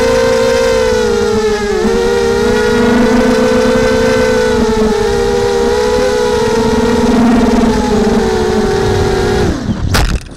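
FPV racing quadcopter's electric motors and propellers whining steadily as it flies low, the pitch wavering slightly with the throttle. About half a second before the end the whine falls away steeply as the motors spin down, and the quad hits the ground with a sharp knock.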